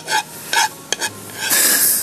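A woman's short, breathy laughter in a couple of quick bursts, then a steady hiss over the last half second.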